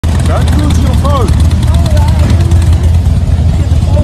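Steady, loud low rumble of a motorcycle ride picked up on a phone microphone, with indistinct voices over it in the first couple of seconds.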